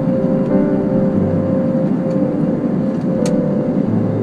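Steady jet airliner noise heard inside the cabin, under ambient music with long held notes; a new low note comes in about a second in.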